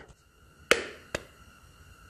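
Two sharp plastic clicks, about half a second apart: the cap being pried off an aerosol spray paint can.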